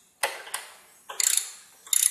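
Socket ratchet wrench clicking as a bolt is turned out: two single clicks, then a quick run of clicks about a second in and a few more near the end.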